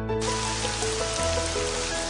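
A steady rain sound effect, starting just after the beginning, laid over background music with sustained notes.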